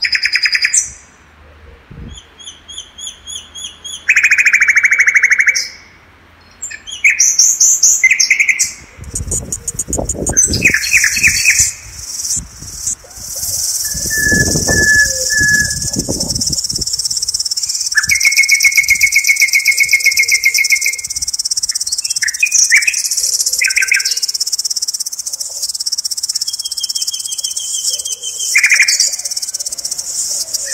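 Several birds singing in woodland, with short chirps and fast trilled phrases coming one after another. From about ten seconds in, a steady high insect buzz runs underneath. Brief low rumbles come about ten and fifteen seconds in.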